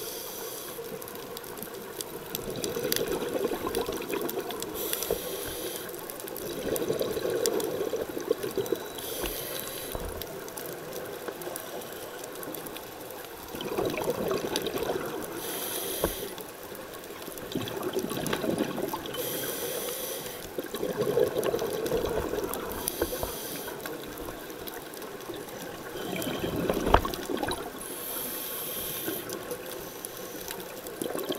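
Scuba diver's regulator breathing, heard underwater: a hiss on each inhale alternating with a burst of exhaled bubbles, the cycle repeating about every four to five seconds.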